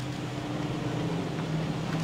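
Suzuki Grand Vitara SUV engine running as the car moves off, a steady low hum growing slightly louder.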